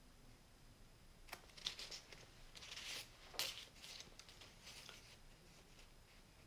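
Mostly near silence, with faint rustling and a few light clicks of paper word cards being handled between about one and three and a half seconds in.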